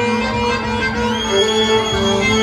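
Instrumental belly-dance music playing, with a sustained melody line that slides up about a second in and holds a long note over a steady lower drone.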